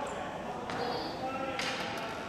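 Ball hockey game in a gymnasium: faint distant voices of players, with two sharp knocks on the hardwood floor, one about a third of the way through and one near the end, and a brief high squeak near the middle.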